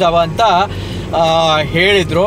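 A person's voice, continuous throughout, over the steady low hum of a car on the road.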